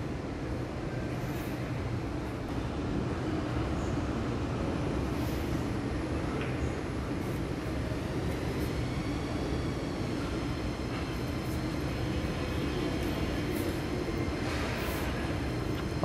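Steady background rumble and hum of an indoor shopping mall, with faint high ticks scattered through it.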